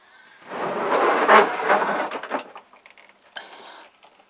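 Clattering and rattling of a Flymo lawnmower being dragged out from among stored things, lasting about two seconds, followed by a few light knocks.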